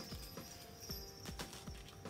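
Light, irregular taps and clicks of small packaged craft items (carded collar bells and charm packets) being picked up, slid and set down on a tabletop.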